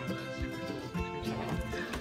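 Background music with a steady beat and held instrument notes.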